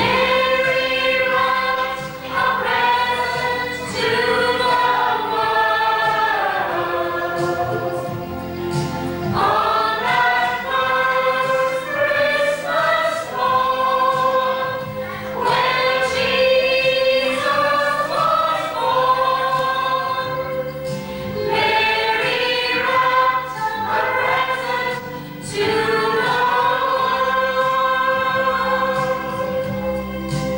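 A choir singing a slow, hymn-like song in long held phrases, with brief breaks between them.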